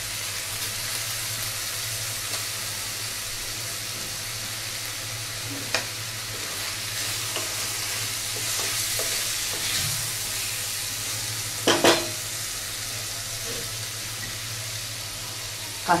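Onions and tomato pieces sizzling in hot oil in a wok while a wooden spatula stirs them, with a steady low hum underneath. There are a few sharp knocks of the spatula against the pan, the loudest a quick double knock about twelve seconds in.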